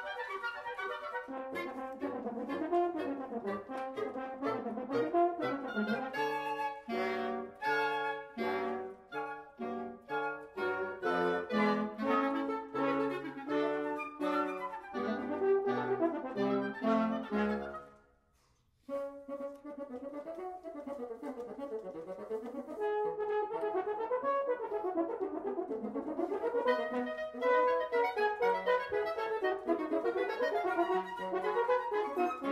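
A wind quintet of flute, oboe, clarinet, bassoon and French horn playing. Short, separated chords fill the first half, the ensemble breaks off for about a second some eighteen seconds in, then it resumes with winding up-and-down runs.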